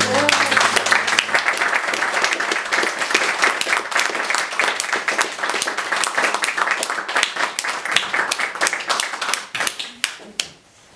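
Audience applauding with dense clapping right after the last piano chord stops; the applause thins and dies away near the end.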